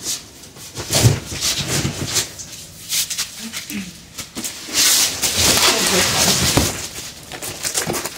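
Cardboard boxes of donated clothes being moved and rummaged through: irregular rustling and scraping of cardboard and bagged clothing, with a few dull knocks.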